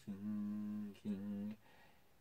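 A man's voice humming unaccompanied: one held note of about a second, then a shorter second note at about the same pitch after a brief break, stopping about a second and a half in.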